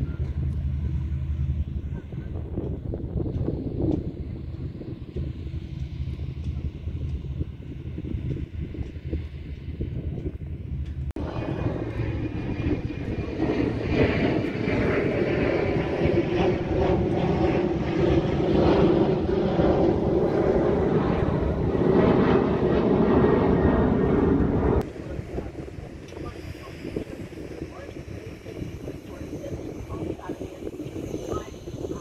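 Engine noise: a steady low drone, then after an abrupt change about eleven seconds in a louder rumbling engine noise that drops away suddenly near the end.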